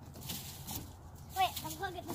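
Quiet outdoor background, then a few short, faint, high-pitched vocal sounds about one and a half seconds in.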